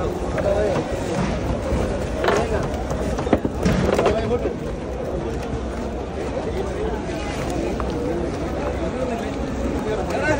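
Several people talking in the background over a low steady rumble, with a few short knocks about two to four seconds in.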